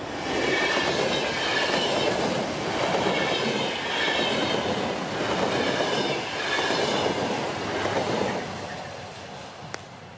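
Commuter train passing close by at speed: wheel and rail noise swells about half a second in, with a pulsing clatter over the rail joints and a high wheel squeal, then fades away near the end.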